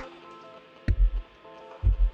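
Instrumental lo-fi hip-hop beat: a deep kick drum hits about a second in and again near the end, under soft sustained keys.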